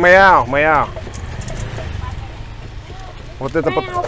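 Short bursts of conversational speech in the first second and again near the end, over a steady low hum in the background.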